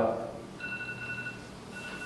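A high electronic tone beeping on and off: one longer beep about half a second in, then shorter ones.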